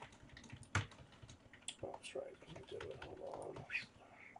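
Computer keyboard and mouse clicking in scattered, light taps, with one sharper click about a second in. A faint low voice murmurs through the second half.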